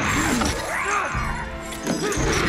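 Film fight-scene sound mix: a sudden crash right at the start and another near the end, with pitched snarls and yells between them over orchestral score music.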